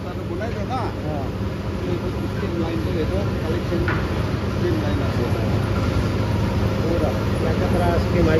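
Steady low hum of factory machinery in a timber-processing hall, with people talking underneath.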